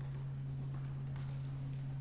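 Faint, scattered keystrokes on a computer keyboard as a short terminal command is typed, over a steady low hum.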